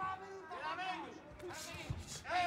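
Faint voices calling out in a boxing arena, with one short thud near the end.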